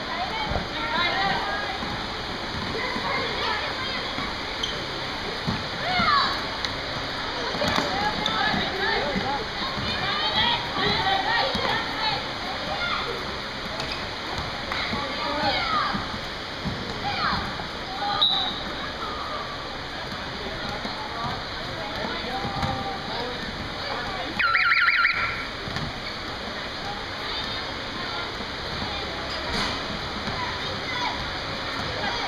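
Indoor junior basketball game: players' and spectators' shouts echo around the hall over short sneaker squeaks and ball bounces. A short trilling whistle blast sounds about 25 seconds in.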